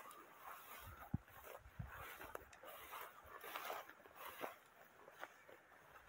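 Faint rustling of tall grass and brush with footsteps as someone walks through it, with a few sharp ticks of stems snapping or brushing the microphone.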